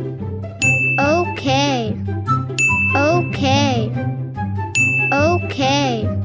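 Cartoon sound effects over steady background music: a bright ding sounds three times, about two seconds apart. Each ding is followed by a short high voice cry that glides up and then down.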